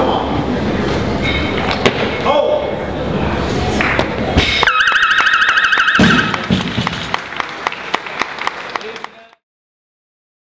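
Crowd noise and voices in a weightlifting hall, then a barbell dropped onto the platform with a knock, followed by a warbling electronic signal tone for about a second and a half. Scattered clapping follows and cuts off suddenly.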